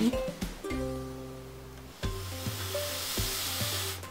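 A steady airy hiss of breath blown through a blow pen, spraying marker ink onto a stencil, starting about halfway through. Background music with plucked notes plays underneath.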